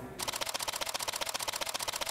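Rapid, even mechanical clicking, about twelve clicks a second, starting a fraction of a second in.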